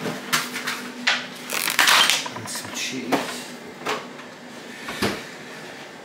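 Clicks, knocks and crinkly rustles of plastic food packets being taken from a fridge and set down on a kitchen worktop.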